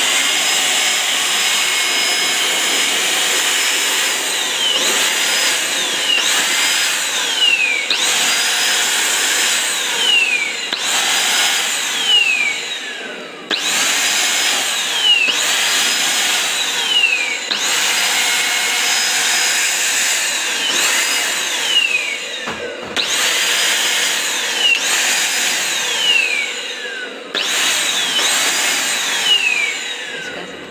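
AGARO 33423 handheld dry vacuum cleaner running with a steady motor whine and rush of air as its crevice nozzle is worked over the fabric of a hair-covered handbag. The whine falls in pitch and recovers every two to three seconds.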